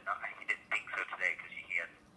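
A voice talking over a telephone line, thin and narrow-band as heard through a phone.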